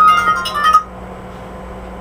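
A short electronic chime of several quick high notes, under a second long, ending less than a second in and leaving a steady low hum.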